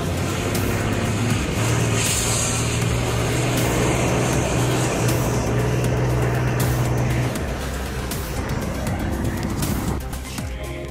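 Tatra truck's diesel engine running hard at a steady pitch as it drives, dropping off about seven seconds in, with background music over it.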